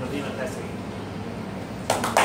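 Low room murmur with a faint voice, then hand clapping starts near the end.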